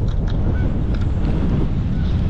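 Wind buffeting the microphone: a loud, steady low rumble with no clear pitch.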